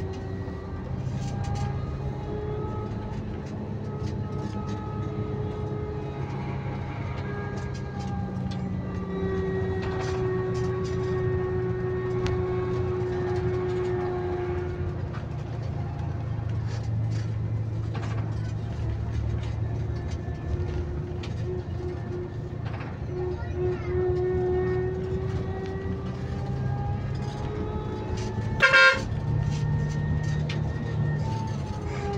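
A bus's engine and drivetrain run steadily under way, heard from the driver's cab, with a whine that drifts slightly in pitch. A short, loud horn blast sounds near the end.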